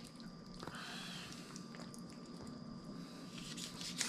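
Faint wet squelching with small clicks as the head, gills and guts of a blue catfish are twisted and pulled out of the body by hand.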